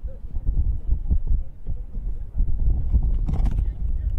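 Wind buffeting an outdoor microphone in uneven low gusts, with faint voices of players on the pitch and a brief sharp sound about three seconds in.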